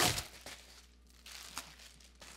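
A plastic bubble mailer being ripped open in one sharp tear, followed by quieter crinkling of the plastic as it is handled.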